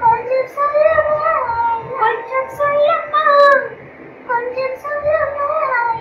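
A mother and her young son singing a song together, the mother singing short phrases and the boy echoing them back as she teaches it. The singing comes in three phrases, with brief breaks about two and four seconds in.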